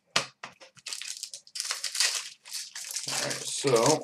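Foil trading-card pack wrappers being torn open and crinkled by hand: a dense, crackly rustle lasting about two seconds, after a single sharp click near the start.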